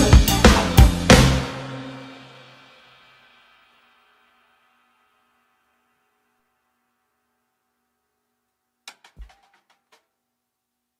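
Acoustic drum kit played hard in the final bars of a song: a quick run of hits ending on one last accented crash about a second in, which rings out and fades over about two seconds. Then silence, broken only by a couple of faint clicks near the end.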